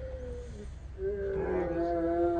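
Onlookers' long, held "ooh" of suspense as a giant wooden Jenga tower starts to tip. One voice is followed about a second in by a louder one, and a second voice joins in near the end.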